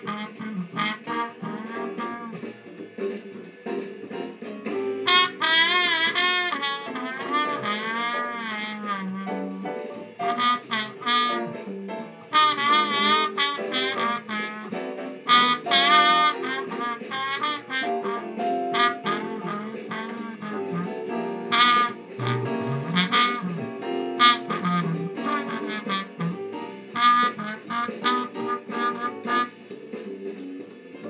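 Muted slide trombone playing an improvised jazz solo, with quick runs and held notes sung with vibrato, over a steady backing accompaniment.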